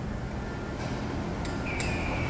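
Steady workshop background hum with two faint clicks in the second half; a thin high tone starts near the end.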